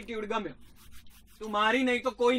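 A man's voice speaking in two short stretches, broken by a pause of about a second that holds only faint rustling.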